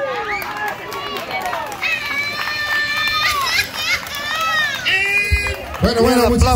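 Several high-pitched voices shouting and calling out in a crowd after the dance music has stopped. A lower man's voice joins near the end.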